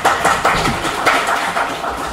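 Audience applauding: dense, loud clapping.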